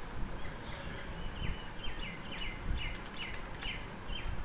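A bird chirping a short falling note over and over, about three times a second, starting about half a second in, over the clicking of a computer keyboard being typed on.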